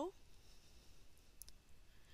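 Near silence with a few faint clicks about one and a half seconds in.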